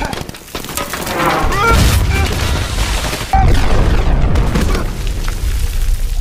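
Battle sound effects from a film soundtrack: gunfire that builds, then a sudden loud explosion about three seconds in, its deep rumble carrying on.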